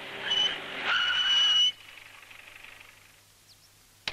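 A vehicle pulls up: its engine and rushing noise swell, then a high squeal rises, as of brakes, and cuts off abruptly as it stops, a little before halfway.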